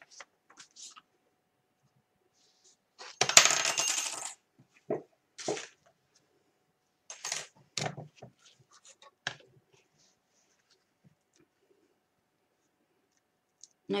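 Plastic cutting plates and thin metal dies of a die-cutting machine being handled and set down: a clattering, clinking rattle lasting about a second, about three seconds in, then a scatter of short clicks and taps.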